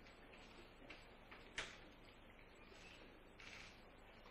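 Faint clicks and knocks from a sheathed katana being handled and set down on a wooden floor, the sharpest a single click about a second and a half in, with two fainter ones before it. A short rustle follows near the end.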